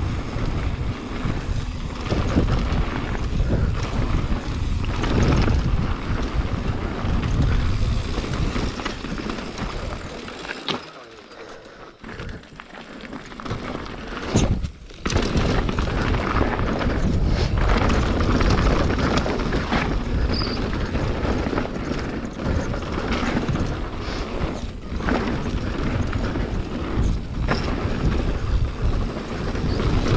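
Mountain bike riding fast down a dirt and gravel trail: wind buffeting the action camera's microphone over tyre rumble and knocks and rattles from the bike. The noise drops away for a few seconds around the middle as the bike slows, then comes back with a sharp knock.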